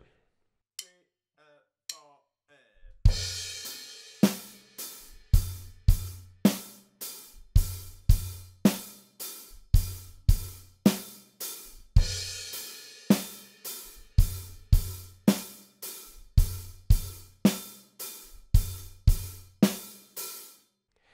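Acoustic drum kit played solo in a slow, steady rock beat: hi-hat eighth notes over kick drum and snare. After about three seconds of near quiet with a few faint ticks, the beat starts on a crash cymbal, and the crash comes again about nine seconds later.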